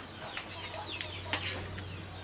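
Chickens calling in a string of short, falling calls, about three a second, over a steady low hum. A couple of sharp clicks of spoons on plates come in the middle.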